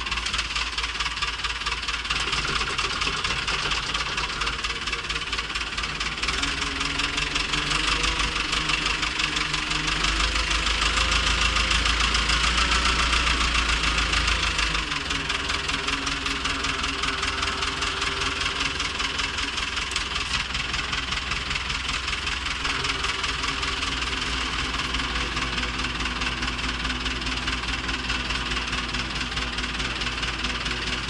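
Old tractor diesel engine running, heard from inside the cab. The engine gets louder from about a third of the way in and settles back about halfway through.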